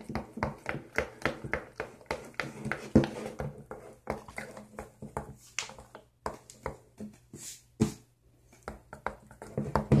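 Fluffy slime of shaving cream and glue being stirred by hand in a bowl: a fast run of soft wet clicks, about three or four a second, with brief pauses past the middle.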